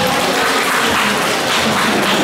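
A roomful of students applauding, many hands clapping steadily.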